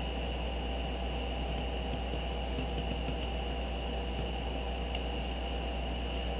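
Steady background hiss and low electrical hum with a thin high whine, the noise floor of a desk microphone recording, with one faint click about five seconds in.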